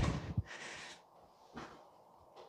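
A low thump at the very start with a couple of fainter knocks, then a short breathy exhale from a person exercising, and a faint breath or rustle about a second and a half in.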